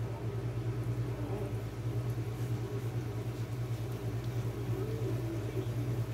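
A steady low hum that holds level throughout, with only faint sound above it.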